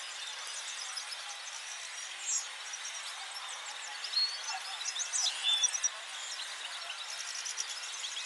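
Many caged finches chirping and twittering in a large show hall: a scatter of short high calls and quick rising and falling notes, busiest about halfway through, over a steady hall hiss.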